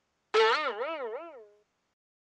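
Cartoon-style 'boing' sound effect: one pitched tone wobbling up and down about three times a second. It starts about a third of a second in, loud at first, and fades out over about a second.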